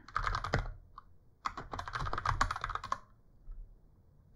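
Typing on a computer keyboard: a short run of rapid keystrokes, then a longer run starting about a second and a half in, stopping about three seconds in.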